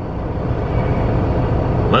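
Semi truck's diesel engine idling, heard from inside the cab as a steady low rumble.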